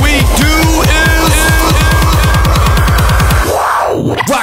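Electronic dance music: a fast, quickening run of deep bass hits under held synth notes. The bass drops out about three and a half seconds in under a rising sweep.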